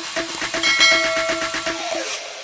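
Electronic background music with a fast, steady pulse. About half a second in, a bright bell-like chime rings over it for about a second. The music stops at the end.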